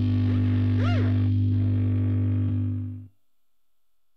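Distorted electric guitar and bass holding one low chord as a song ends, then cut off abruptly about three seconds in.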